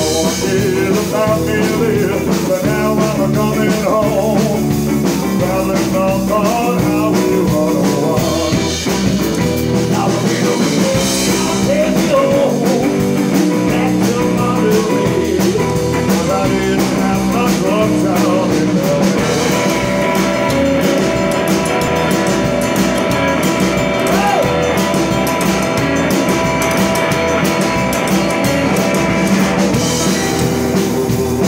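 Live rock and roll band playing, with a hollow-body electric guitar, an upright double bass and a drum kit.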